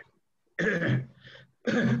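A person clearing their throat over a video-call line, then a voice starts speaking near the end.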